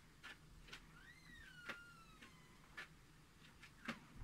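Near silence with faint scattered ticks. About a second in comes a faint animal call lasting about a second, its pitch rising and then falling.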